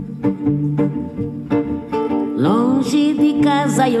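Acoustic guitar played with a thumb pick, a plucked samba accompaniment over a moving bass line. A little past halfway, a woman's singing voice comes in with gliding, wavering notes.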